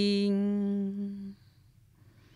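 A woman's voice holds one long, steady note at the end of a phrase of a Dao-language song, with no accompaniment. The note fades and stops about a second and a half in, leaving near silence.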